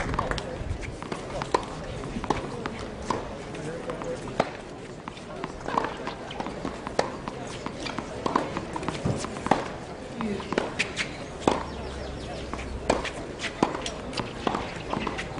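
Tennis ball bouncing on a hard court now and then, sharp single taps about a second apart, over faint spectator chatter.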